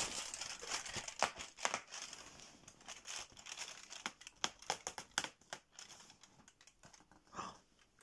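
Fingers tearing open a perforated cardboard door on a Maltesers chocolate advent calendar and crinkling the foil tray behind it: a run of small crackles and rips that thin out toward the end.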